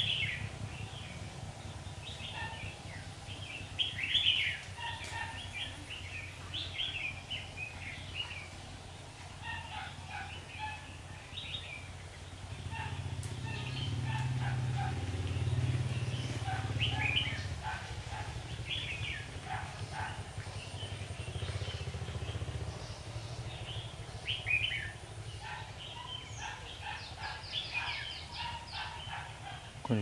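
Red-whiskered bulbuls calling, a run of short, sharp chirped phrases on and off, over a low steady hum that grows louder in the middle.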